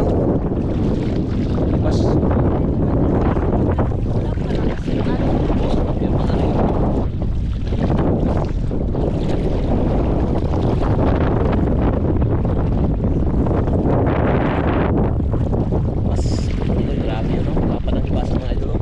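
Wind buffeting the camera microphone in a steady low rumble, over water sloshing in the shallows as people wade.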